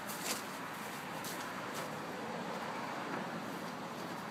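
Steady, quiet outdoor background hiss with a few faint clicks in the first two seconds.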